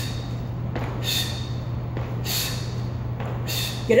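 A person doing repeated high jumps, a short noisy thud about every second and a quarter, four in all, over a steady low hum.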